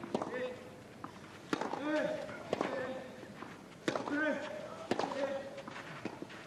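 Tennis rally: five racket strikes on the ball about a second apart, alternating between the two players, each strike with a short grunt from the player hitting.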